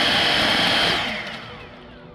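EGO Power+ electric backpack leaf blower running at full blast with a steady high whine and rush of air, then winding down with a falling whine from about a second in.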